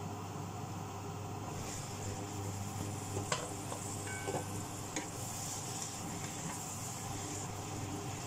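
Sea cucumber and mushrooms sizzling in a pan, the hiss growing a little over the first couple of seconds, with a few sharp knocks of a utensil against the pan around the middle, over a steady low hum.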